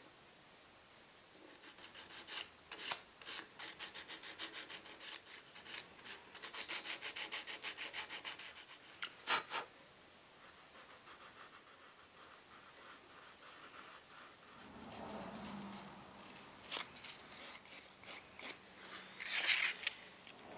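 Small hand file and sandpaper rubbing on the end of a small mahogany finial, smoothing a putty-filled chip. Quick back-and-forth strokes come about five a second for several seconds, then after a pause a few scattered scrapes near the end.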